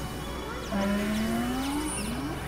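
Experimental synthesizer drone: over a steady low hum, a sustained tone comes in about two-thirds of a second in and glides slowly upward in pitch, with faint sweeping chirps higher up.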